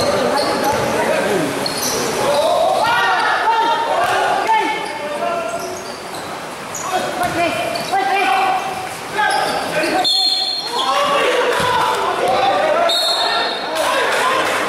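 A basketball being dribbled on a hard court floor in a large hall, with men's voices calling out throughout.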